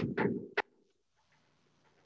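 A blackboard being wiped with an eraser: a few quick rubbing strokes that stop about half a second in, followed by faint scraps of sound.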